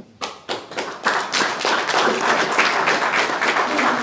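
Audience applause: a few separate claps at first, thickening within about a second into steady clapping from the whole room.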